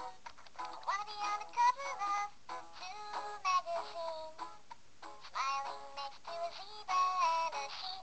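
High-pitched, synthetic-sounding singing voice in short melodic phrases, with brief pauses about half a second in and again around the five-second mark.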